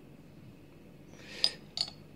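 Two light glassy clinks about a third of a second apart, in the second half: a small quartz-glass discharge lamp being handled and set down by hand.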